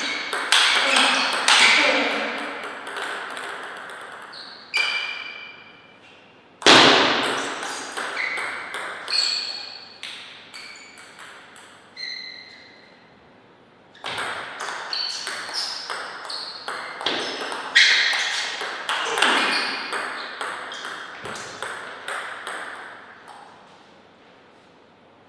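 Table tennis ball clicking back and forth between the rubber bats and the table in fast rallies, a few hits a second. The hits come in three runs of rallying with short lulls between points, and one loud sharp hit about seven seconds in.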